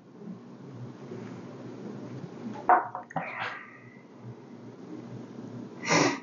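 A man's short, sharp breaths: one about three seconds in and another at the very end, as he noses and tastes a whiskey. Under them is a low, steady room hum.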